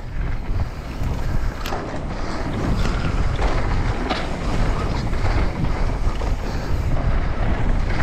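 Wind rushing over the microphone of a mountain biker's onboard camera during a fast descent, mixed with the tyres rolling over dirt and gravel. A few light knocks come through about two, three and four seconds in.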